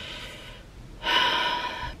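A woman's audible breath: a soft breath, then a longer, louder breathy vocal sound about halfway through.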